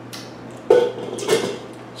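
A stainless-steel wine spit bucket being put down and moved on a wooden tabletop: two metallic clanks about half a second apart, the first louder, each followed by a short ringing tone.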